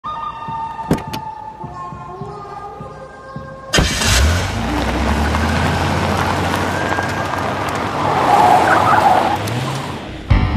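Sustained music notes, then about four seconds in a pickup truck's engine and tyres on a dirt track come in suddenly and loudly. The rumble runs on steadily and fades slightly just before the end.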